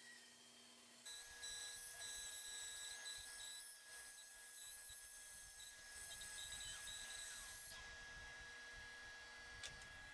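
Bandsaw running faintly, a steady whine over a light hiss.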